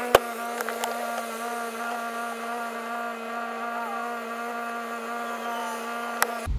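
A car door shuts with a sharp knock just after the start. A steady, even hum with several pitched tones follows inside the closed car cabin.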